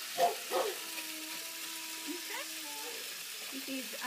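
Water spraying from a garden hose, hissing steadily, as a patch of garden is flooded to test its drainage. A short loud sound comes about a quarter of a second in, then a steady held tone lasts about two seconds.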